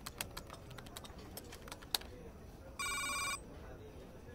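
Quick, irregular keystrokes on a laptop keyboard for about two seconds, then a short electronic alert tone, a rapid pulsing chime about half a second long, like a phone's message or ringtone sound.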